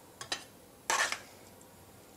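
Spoon clinking against a bowl and plate while serving: two light clicks, then a louder clatter about a second in.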